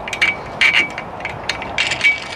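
Small metal clamp hardware on a roof-mount bike rack being fitted by hand: a butterfly locking knob pushed and turned into place, making a run of sharp metal clicks and short scrapes with brief high squeaks.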